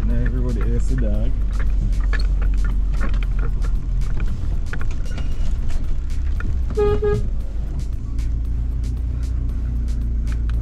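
Low rumble of a VW Amarok pickup crawling over a rocky dirt track, heard from inside the cab, with frequent small knocks and rattles from the rough ground. A vehicle horn gives one short toot about seven seconds in.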